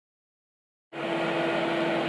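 About a second of dead silence, then an Andrew James halogen oven running: its convection fan gives a steady whirring noise with a constant low hum.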